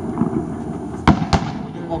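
Fireworks display: two sharp bangs from bursting aerial shells about a quarter of a second apart, a little over a second in, over a steady background rumble.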